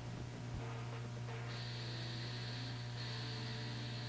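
Steady mains hum from a Thorens record changer's playback chain after the 45 has run out, with a soft thump about half a second in as the changer cycles its tonearm off the record. A faint high steady whine comes in about a second and a half in.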